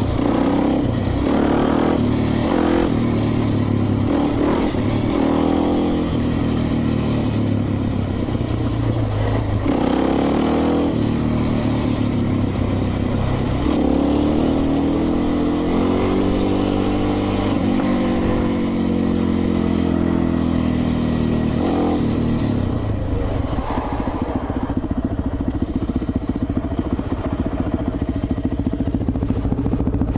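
Suzuki LTZ 400 quad's single-cylinder four-stroke engine running under way, its note rising and falling as it accelerates and eases off. For the last several seconds it settles to a steadier, lower note as the quad slows.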